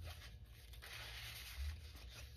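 Paper tags sliding and rustling against paper as they are tucked into a paper pocket on a junk journal page, with a soft low bump of handling about one and a half seconds in.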